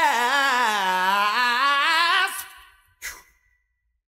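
Unaccompanied male voice holding a long wordless sung note with heavy vibrato, sliding down in pitch and fading out about two and a half seconds in. A short faint sound follows near the three-second mark, then silence.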